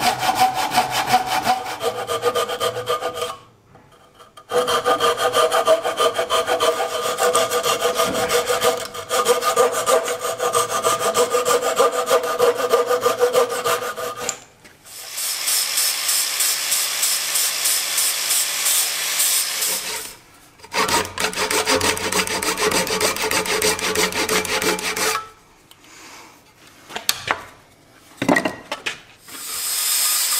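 Hand saw cutting through a wooden board held in a bench vise: quick back-and-forth strokes with a short pause about three seconds in, stopping about halfway. Then an angle grinder shapes the wood, a higher-pitched sound that runs in spells with brief stops, mostly off near the end.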